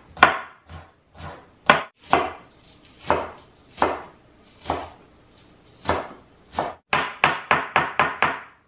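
Chef's knife chopping spring onions on a wooden cutting board: separate knife strikes against the board every half second or so, turning into quick, rapid chopping near the end.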